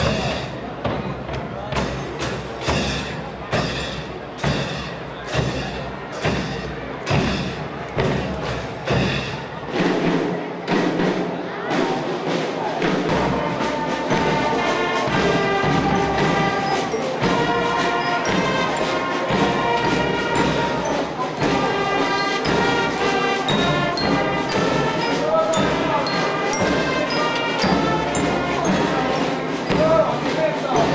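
Brass marching band with sousaphones playing. It opens with a steady drum beat of a little more than one stroke a second, and about halfway through the horns join in with sustained chords over the beat.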